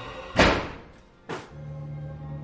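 Two heavy thumps: the first loud and ringing out for about half a second, the second weaker about a second later. A low music drone comes back after them.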